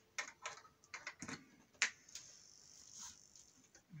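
A series of faint clicks and knocks from hands handling equipment: the gusli's pickup cable end and the amplifier's controls as the instrument is switched over to amplified sound. One sharper click stands out about two seconds in.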